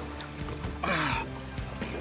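Background music under a short water splash about a second in, from a barracuda thrashing as it is lifted at the side of the boat.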